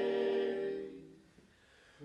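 Male vocal quartet singing a cappella, holding a close-harmony chord that fades away about a second in, then a short near-silent pause between phrases.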